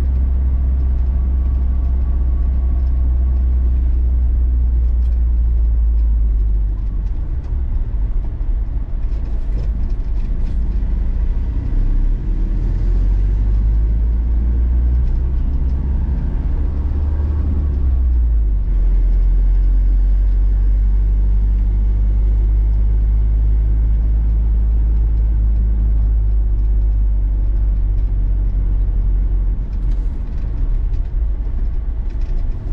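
Troller 4x4 driving through town, heard from inside: a steady low engine and road rumble. The engine note climbs for several seconds around the middle as the vehicle speeds up, and the rumble changes in strength a couple of times as the speed changes.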